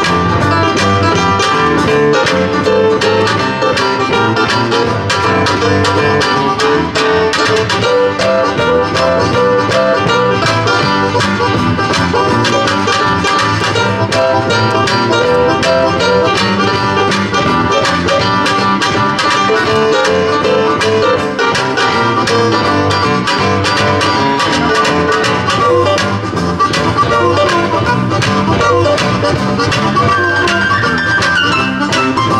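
Live blues band playing an instrumental passage: a harmonica carries the lead over acoustic guitar, electric bass guitar and keyboard, with no singing.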